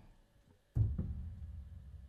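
A single low thump about three-quarters of a second in, followed by a small click, its low ring dying away slowly over quiet room tone.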